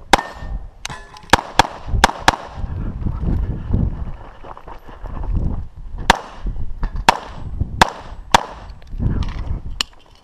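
CZ SP-01 9mm pistol firing about ten shots, mostly as quick pairs about a quarter second apart, with a gap of about three and a half seconds partway through. A low rumble runs underneath.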